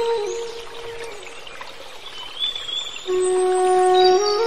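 Background flute music. A held flute note fades away about a second in, leaving a quieter stretch with faint high wavering notes. A new flute phrase starts about three seconds in.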